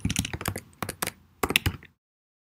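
Typing on a computer keyboard: a quick, irregular run of keystrokes that stops just before the end.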